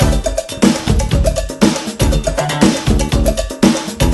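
Pop band music: an instrumental passage with a steady drum and percussion beat under keyboard and other pitched instruments, with no singing.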